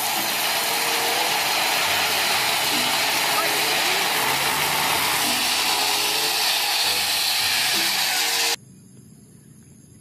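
KAMAZ dump truck tipping its bed and unloading gravel: a loud, steady rushing hiss with the truck running underneath. It stops abruptly about eight and a half seconds in.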